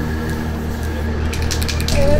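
Aerosol spray-paint can hissing in several short bursts, about halfway in, as letters are sprayed onto asphalt, over a steady low hum.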